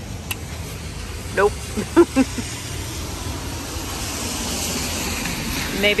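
A car passing on a wet street, its tyre hiss swelling over the second half, over a steady low city rumble. A single sharp click near the start.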